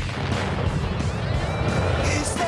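Sound-effect-laden theme music for an animated TV title sequence: it starts suddenly with a hit and a dense whooshing rush over a pulsing low beat, with a rising tone near the end.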